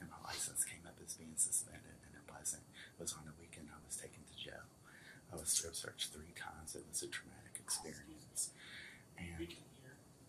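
Hushed, whispered conversation among several people, with many sharp hissing s-sounds and no clearly voiced words.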